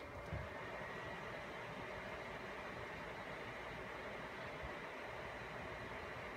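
Steady whirring hiss of the cooling fans in a rack of running Cisco routers and switches, with a faint high whine.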